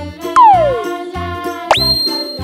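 Cheerful, jingly children's background music with a steady beat. About a third of a second in, a loud sound effect glides down in pitch for half a second. Near the end, a quick rising sound effect sweeps up and holds a high ringing tone.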